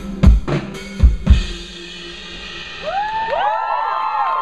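Live indie rock band ending a song: four heavy kick-and-snare hits on the drum kit over a held, ringing chord, then from about three seconds in several whistles rising in pitch and holding over the fading chord.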